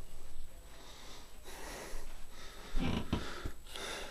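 A person breathing and sniffing close to the microphone: a noisy stretch about a second and a half in and another near the three-second mark.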